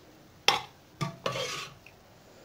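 A metal spoon clinks against a dish as vegetable stew is spooned out: one sharp clink about half a second in, then another clink and a short scrape around the middle.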